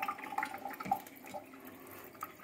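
Thin stream of water from a reverse-osmosis drinking-water faucet running and splashing into a stainless steel sink.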